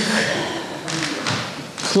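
A woman's voice in a halting pause between words, over an even background noise, with a dull thump about a second in and another near the end.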